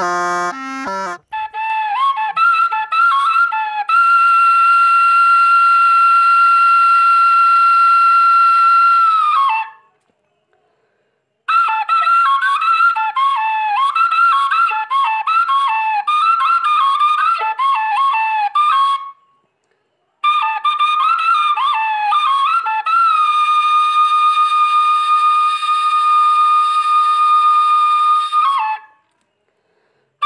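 A solo flute-like wind instrument plays a high melody of quick ornamented notes, twice settling into a long held note, in three phrases with short silent pauses between them.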